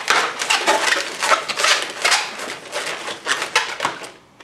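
Latex modelling balloons squeaking and rubbing against each other as hands twist bubbles together, a dense rapid crackling-squeaky rustle that stops suddenly at the end.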